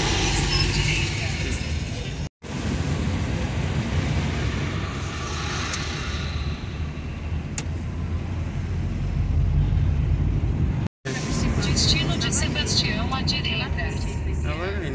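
Car interior noise while driving: a steady low engine and road rumble heard inside the cabin, broken by two sudden brief dropouts, about two and a half and eleven seconds in.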